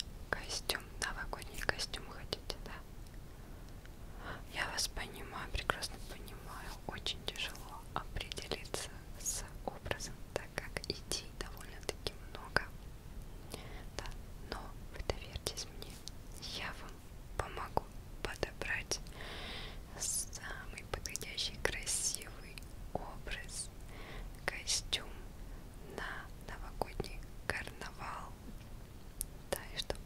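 A woman whispering close to the microphone, a soft breathy whisper broken by many small clicks.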